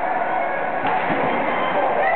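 Indoor ice hockey game: spectators' voices echo around the rink, with a single sharp knock of stick or puck about a second in as the puck is carried to the net and shot.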